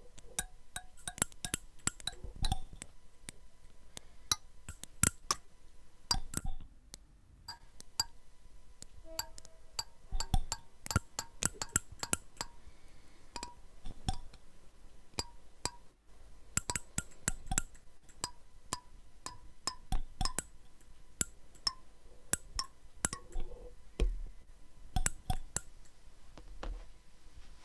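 Teeth of combs plucked one at a time by several players: an irregular scatter of sharp clicks and ticks, some ringing as brief little pings. There is a short lull about six seconds in.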